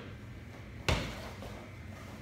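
A single sharp thud on a wrestling mat about a second in, as the wrestlers turn and scramble out of a leg ride.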